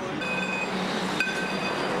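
Steady street traffic noise from passing vehicles, with a few faint, thin high tones held throughout.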